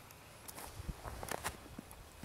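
Footsteps on snow-covered ground: a few uneven steps.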